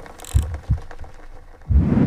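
Intro sting for an animated logo: two low thumps less than half a second apart, then a rising swoosh near the end that swells into the music that follows.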